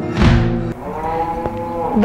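Flamenco-style guitar music ends with a last strum, cutting off about three-quarters of a second in. Then comes one long, steady animal call of a little over a second.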